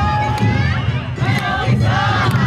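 Many dancers' voices shouting dance calls together, overlapping and rising and falling, over a steady low rumble of crowd and accompaniment.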